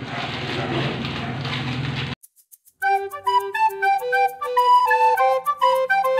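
Rustling of plastic snack wrappers being wiped clean with a cloth, cut off abruptly about two seconds in. Then, after a brief gap, background music with a flute melody.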